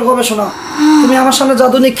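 A person's loud, drawn-out moaning cry in two long stretches, with a short break about half a second in.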